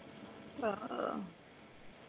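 A person's brief vocal sound, under a second long, starting about half a second in, with a quick pitch bend.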